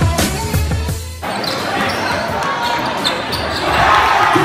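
Background music with a heavy beat cuts off suddenly about a second in. Live basketball game sound follows, echoing in a gym: a ball bouncing on the hardwood court over crowd noise.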